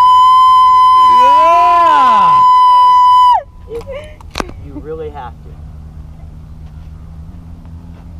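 A loud, steady, high-pitched electronic tone lasting about three and a half seconds, with voices faintly heard beneath it; it slides down in pitch as it cuts off. After it, a much quieter low hum with a few brief fragments of voices.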